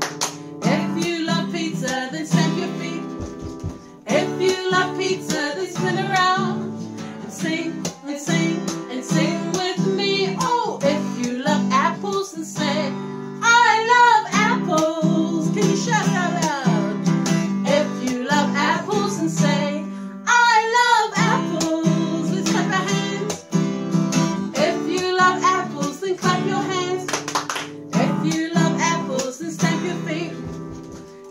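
Acoustic guitar strummed steadily while women sing a children's song.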